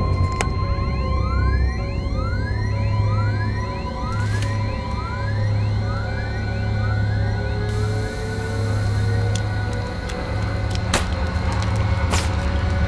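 Synthesized sci-fi alarm effect for a machine's start-up sequence. A rising electronic sweep repeats about every two-thirds of a second over a steady low drone. There is a sharp click near the start and a couple of sharp strikes near the end.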